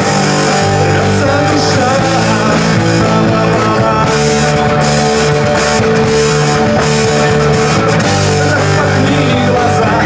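Live rock band playing loud and steady: an Epiphone Firebird-style electric guitar through an amplifier, with drums and cymbals.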